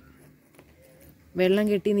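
A short, quiet pause with faint room tone and a few faint light ticks, then a person speaking from about two-thirds of the way through.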